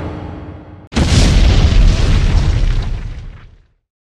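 Cinematic boom sound effect edited onto the video. The fading tail of one deep impact hit is followed, about a second in, by a second sudden boom that rings on and fades out over about two and a half seconds.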